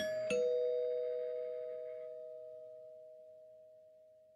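A two-note chime, ding-dong: a higher bell-like note, then a lower one about a third of a second later, both ringing on together and slowly fading away as the song's closing sound.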